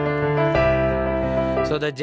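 Digital piano playing held minor-key chords over a deep bass octave. About half a second in, the chord changes: the bass steps down while the melody note on top rises. This is the Andalusian cadence with a climbing right hand and descending bass. The chord dies away near the end.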